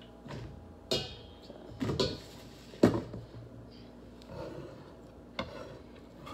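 Kitchen clatter: a few separate knocks and clanks on the counter, one with a brief metallic ring about a second in, as a stainless mixing bowl is fetched and set down.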